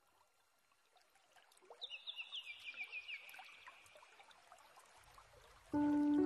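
Faint recorded nature sounds: trickling water, with a quick run of short falling bird chirps about two seconds in. Soft music with sustained notes begins just before the end.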